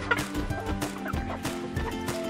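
Chickens clucking a few times over steady background music with a regular beat.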